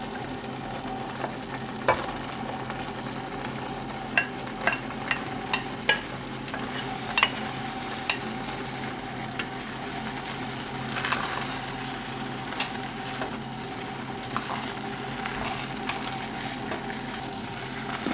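Shredded chicken and tomato-chipotle sauce sizzling in a glazed clay cazuela on a gas burner while a wooden spoon stirs it, with scattered sharp knocks of the spoon against the clay pot over a steady low hum.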